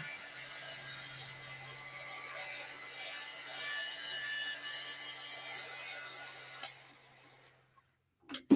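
Heat gun running steadily: a low fan-motor hum with an airy hiss of blown air. It clicks off near the end and winds down to silence.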